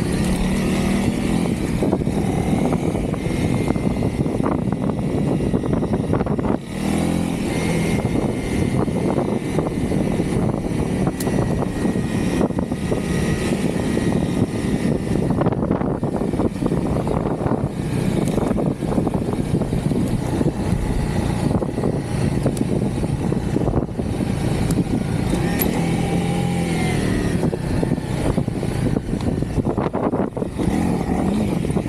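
Honda CRF300L dual-sport motorcycle's single-cylinder engine running under way, its engine speed rising and falling, with a brief drop in level about six to seven seconds in, under a continuous rush of noise.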